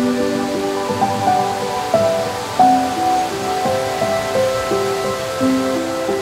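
Background music: a soft melody of held notes that change every half second or so, over a faint steady hiss.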